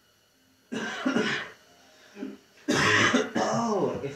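A man coughing and clearing his throat in two loud bouts about two seconds apart.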